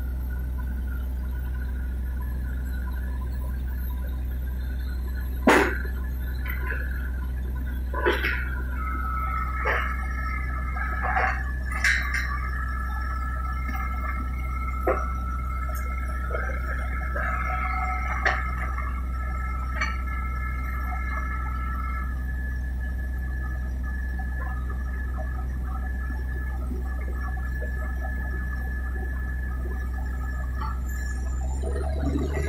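Truck-mounted borewell drilling rig running with a steady low drone. Sharp knocks come at intervals, the loudest about five seconds in, and thin high squealing tones sound through the middle.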